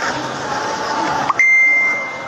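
A high, steady beep held for about half a second, starting with a quick upward glide a little past the middle and then fading. It follows a fainter tone that rises slowly.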